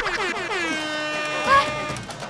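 Air-horn sound effect: one long horn tone that drops in pitch as it starts, then holds steady almost to the end, with a short, louder, higher sound about one and a half seconds in.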